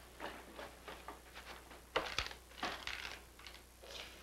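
Light rustling and handling noises with scattered small clicks and taps, and a sharper knock about two seconds in: a grocery delivery and a paper slip being handled on a kitchen counter.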